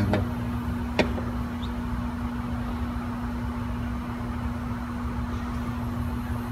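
Steady low mechanical hum at one fixed pitch, with a single sharp click about a second in.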